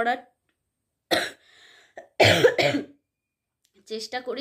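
A woman coughing: one short cough about a second in, then a louder double cough around two seconds in. She is ill with a fever.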